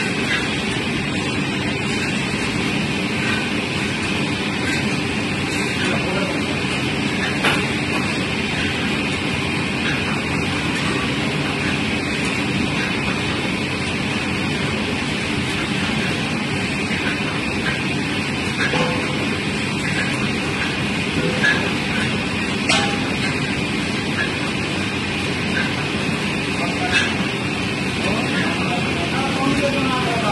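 Automatic steam-heated mawa (khoa) kettle running: the motorized scraper-stirrer turns through milk being boiled down, with a steady mechanical noise and a few sharp clicks.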